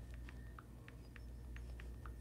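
Faint, light taps of typing a text message on a phone, about four clicks a second.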